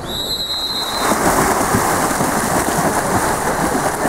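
A referee's whistle sounds one blast lasting about a second, starting the swim-off. Then comes loud, continuous splashing as water polo players sprint through the water for the ball.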